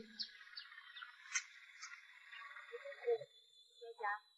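Faint high bird chirps, about five short ones over the first two seconds, over low background noise.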